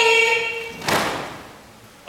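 The final held note of a Japanese university cheer song, voices with orchestra, stops just under a second in. It is cut off by a single sharp thump that dies away in the hall's echo.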